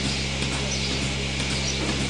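Milking machine running on a cow while she is milked: a steady, unchanging low hum.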